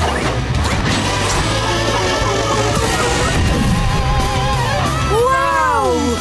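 Cartoon power-up sound effects, a dense rushing sweep with crash-like hits, layered over energetic background music as a flying monster-truck character boosts to light speed.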